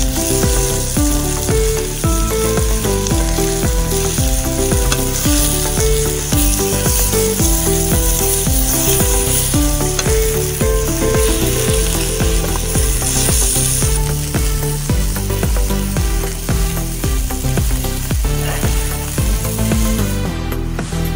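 Masala-coated whole fish sizzling in oil on a flat iron tawa over a wood fire, with a metal spatula scraping and tapping against the pan. Background music with a steady beat plays throughout.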